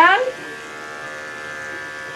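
Electric dog-grooming clippers running with a steady buzz.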